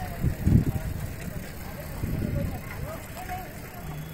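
Indistinct distant voices over steady outdoor background noise, with a loud low thump about half a second in.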